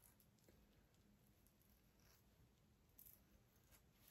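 Near silence, with a few faint, brief scratches of a Muhle Rocca double-edge safety razor cutting lathered stubble; the clearest is about three seconds in.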